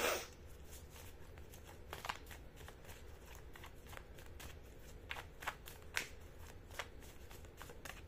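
A deck of tarot cards being shuffled by hand: faint, irregular flicks and clicks of cards slipping against each other, with one louder snap at the very start.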